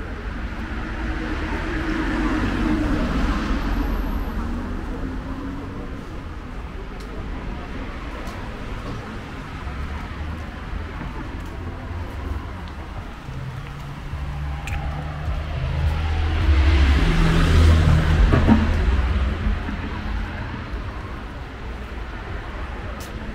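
Street traffic: cars driving past on a wide city road, each swelling up and fading away. One passes a couple of seconds in and a louder one around three-quarters of the way through, over a low steady rumble.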